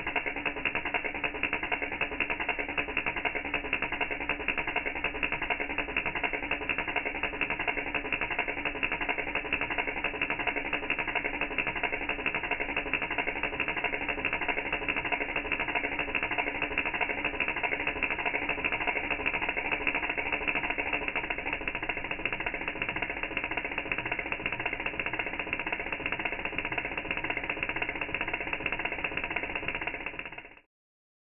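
ACDelco spark plugs on a bench test stand firing rapidly from an HEI distributor, a steady buzzing crackle of sparks that does not change.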